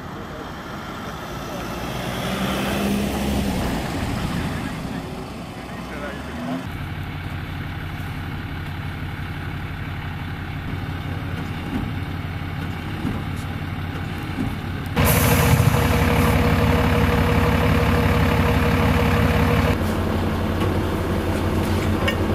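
Vehicle noise swelling and fading in the first few seconds, then a large vehicle's engine running steadily. About halfway through it gets suddenly louder with a steady whine for about five seconds, then drops back a little. This fits a car being pulled out of a ditch on a tow strap.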